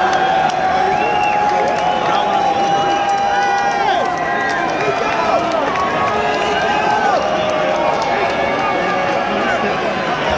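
Arena concert crowd cheering and shouting, many voices overlapping close around the microphone with no music playing; one voice holds a long note in the first few seconds.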